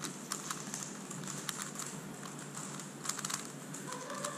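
Megaminx being turned fast by hand: its plastic faces click and clack in quick, irregular runs of turns.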